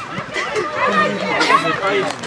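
Several voices of young football players and a coach shouting and calling out at once on the pitch during play.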